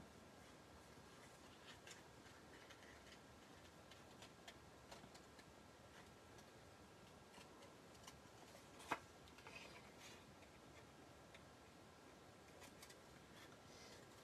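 Small scissors quietly snipping heat-embossed cardstock, faint scattered clicks with one sharper snip about nine seconds in.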